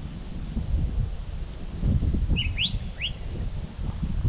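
A bird calling three short rising chirps in quick succession about two and a half seconds in, over a steady low rumbling noise.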